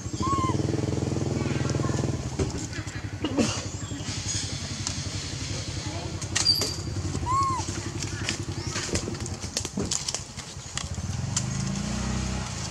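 A small engine running steadily for about the first two seconds and again from around six seconds in, with people's voices in the background. Two short chirps come, one just after the start and one around seven seconds in.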